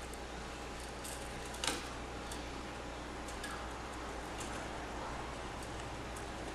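Faint handling sounds of thin enamel wire being wound around the wooden pegs of a coil-winding jig: light scattered ticks and rubs, with one slightly louder click just under two seconds in, over a steady low hum.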